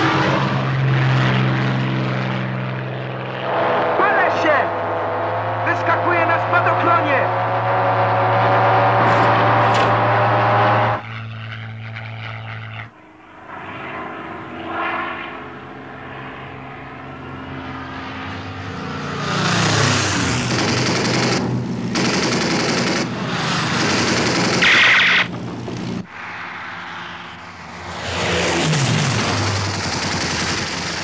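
WWII fighter aircraft piston engines droning steadily, with a pitch sliding down as a fighter dives. Several bursts of machine-gun fire come in the second half.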